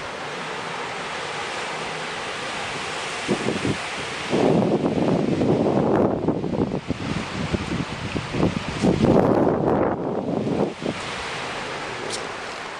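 Steady hiss of wind and light surf, then gusts of wind buffeting the camera microphone from about four seconds in, easing off just before the end.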